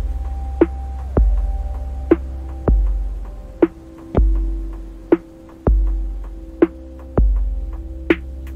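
Minimal electronic music: a deep sub-bass pulse every second and a half, each one fading away, alternating with a sharp click-like drum hit, over a sustained synthesizer drone.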